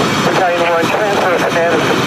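Steady loud rushing noise from a fully involved building fire, with a voice speaking over it in short broken phrases.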